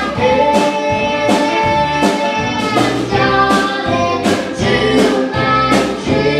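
Live country band: a young girl's lead vocal over strummed acoustic guitar, with a hand drum struck in a steady beat.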